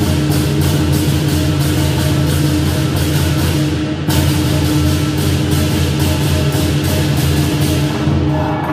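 Live lion dance percussion: a big drum with crashing cymbals and gong, played loud in a fast steady rhythm to accompany the pole routine. The cymbal strokes break off briefly about halfway through, then carry on.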